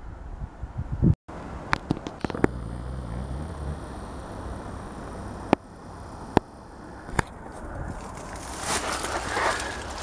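Handheld outdoor ambience: a few sharp clicks scattered through the middle, a faint low engine hum from a distant vehicle for a couple of seconds early on, then rustling of dry scrub and footsteps over rock near the end as the walker pushes through the undergrowth.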